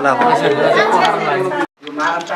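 Only speech: a man talking, cut off abruptly near the end by a moment of silence.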